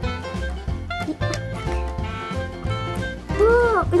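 Upbeat swing-style background music with a bass line that steps from note to note. A girl's voice comes in near the end.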